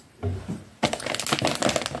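A soft thump, then about a second in a stretch of rapid crinkling and rustling as something is handled close to the microphone.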